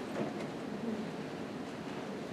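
Steady room noise, an even hiss with a faint low rumble, in a pause between speakers.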